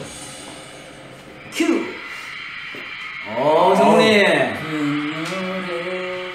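Music-show broadcast audio playing from a TV monitor into a small room: quiet at first, then a pitched voice that rises and falls about three seconds in, and held notes near the end.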